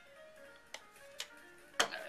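Mighty Mug Go travel mug set down on a desk: a sharp knock near the end, the loudest sound, after two lighter clicks, over background music.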